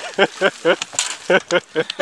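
A person's voice in a quick run of short syllables, about five a second.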